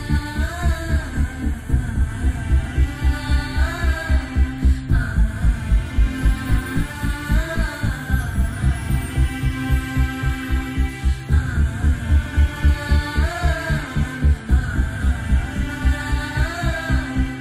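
Background film score: a fast, even pulsing bass beat under a recurring melodic phrase that rises and falls every few seconds.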